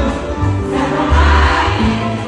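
Live band music with several voices singing together over a heavy, pulsing bass beat.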